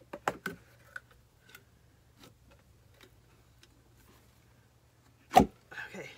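A plastic mould being flexed and worked to free a cast cement candle holder over its lip: scattered small clicks and creaks, then one loud knock about five seconds in as the casting comes free.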